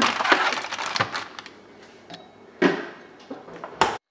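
Rustling and knocking as a zip-top plastic bag of marinated chicken is pushed onto a refrigerator shelf among other food, with a few separate handling noises and a sharp knock near the end.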